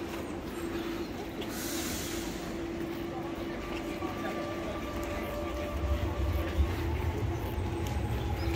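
Steady machine hum with a constant whine held throughout, and a deeper rumble that comes in about six seconds in, under faint voices of people nearby.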